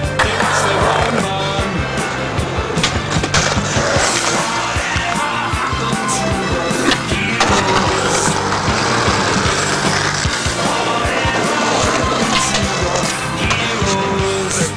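Skateboards rolling and popping, with the sharp clack of boards hitting and landing on concrete and tarmac, over a music track with steady bass notes.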